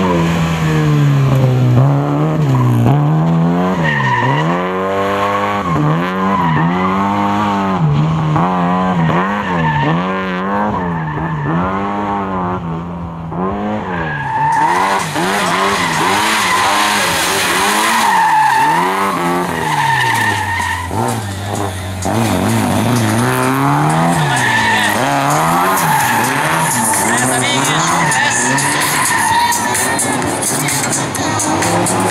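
Lada 2105 rally car's four-cylinder engine driven hard, its pitch rising and falling again and again every second or two as the driver accelerates and lifts between tight turns. From about halfway in, tyre squeal and skidding join it.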